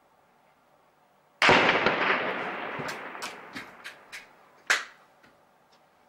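Gunfire: a loud gunshot about a second and a half in that echoes for about two seconds, a few fainter sharp cracks, then a second loud, short shot near the end.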